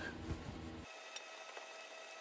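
Faint rubbing of a cloth rag wiped back and forth over the painted steel fuel tank of a 1982 Honda ATC 185S, cleaning it with degreaser.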